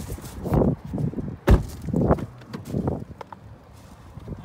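Footsteps and handling of a compact SUV's doors: irregular scuffs and knocks, with one sharp knock about a second and a half in.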